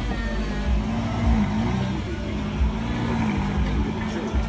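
Lamborghini Gallardo Spyder's V10 engine revving as the car pulls away slowly from behind, its pitch rising and falling.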